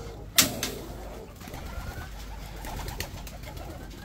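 Pigeons cooing in a low, continuous murmur, with a single sharp knock about half a second in.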